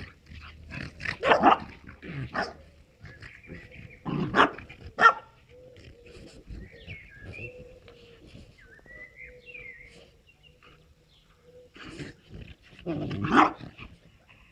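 Two dogs, a French bulldog and a Moscow watchdog × American Staffordshire terrier cross, at rough play with short barks. There are several barks in the first five seconds, a quieter stretch in the middle, and one loud bark near the end.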